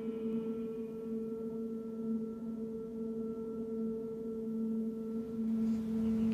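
A single low tone held steady on one pitch with a few overtones: a sustained drone from the film's score, swelling slightly near the end.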